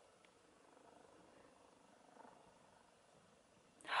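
Faint, slow sniffing: a person breathing in through the nose at a pillow-spray bottle to smell its scent.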